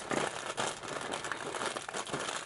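Packaging crinkling as it is handled, a dense, irregular run of small crackles.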